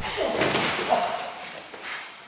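A sharp thud right at the start as a kick lands in a scuffle on gym mats, followed by about a second of scuffing and shuffling of bare feet and bodies on the mat, with a brief grunt about a second in.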